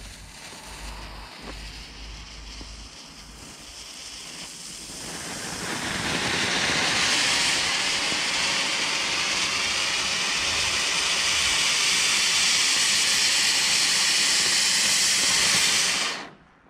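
Nico Super Sprüher firework fountain burning with a hiss. It starts softly, swells over about two seconds a third of the way in, holds loud and steady, and cuts off suddenly at the end.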